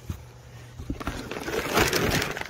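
Rustling and scraping of worm castings and bedding being handled over plastic screen trays: a few soft clicks, then louder, busier scraping from about a second in.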